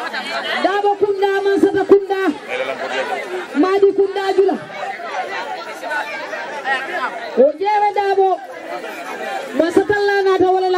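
A voice chanting in long, level held notes, each about a second, over the chatter of a crowd.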